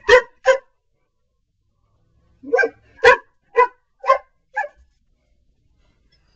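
A greyhound barking: two quick barks, a pause of about two seconds, then a run of five barks about half a second apart.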